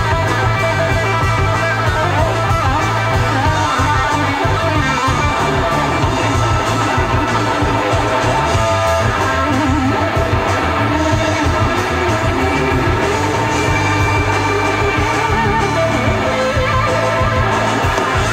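Live rock band playing an instrumental passage, with a semi-hollow-body electric guitar to the fore over bass guitar and drums, the pitch of the guitar lines wavering and bending.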